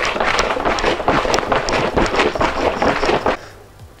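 Honey-and-water mead must sloshing hard inside a large plastic demijohn as it is shaken vigorously to mix and aerate it, with the liquid and plastic rattling and knocking irregularly. The shaking stops a little over three seconds in.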